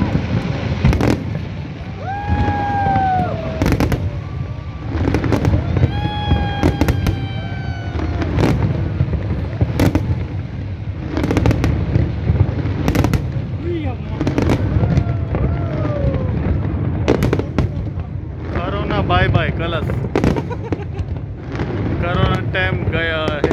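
Aerial fireworks shells bursting in quick succession over a continuous low rumble, with people's voices calling out now and then above the bangs.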